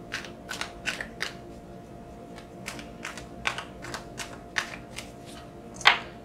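Tarot deck being shuffled and handled in the hands: irregular soft card snaps and slides, about two a second, with a sharper card tap just before the end.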